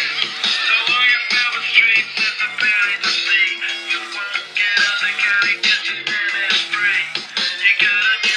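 Pop song with singing, played from a phone through the small built-in speaker of a WowWee RS Media robot; thin, with no deep bass.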